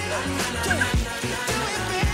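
Background pop music with a steady beat.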